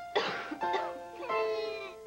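A man coughs once, just after the start, over background music.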